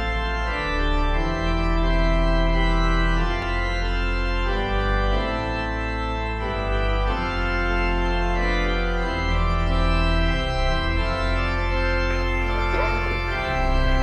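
Organ music: slow, held chords over deep sustained bass notes that change every second or two. Near the end, outdoor background sound starts to come in underneath.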